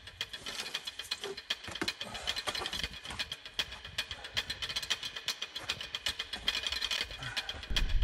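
Rock scrambling up a steep boulder gully: a continual irregular run of small clicks, scuffs and scrapes from climbing shoes and hands on rock and gear shifting, over a faint steady hiss.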